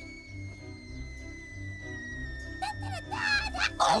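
Cartoon background music with a low pulsing beat, over a long whistle that slowly falls in pitch as the owl dives. A few high, wavering squeaks come near the end, just before the catch.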